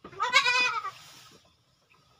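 A goat bleating once, a single wavering call just under a second long.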